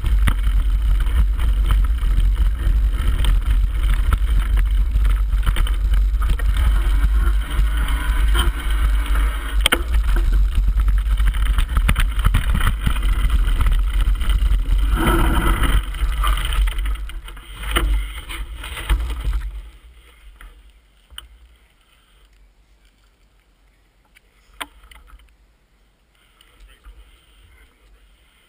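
Rumbling wind buffeting and rattling from a bike-mounted action camera as a mountain bike rides fast down a rough dirt trail, with constant small knocks from the bumps. The noise drops away as the bike stops about three-quarters of the way through, leaving a quiet background with a couple of faint clicks.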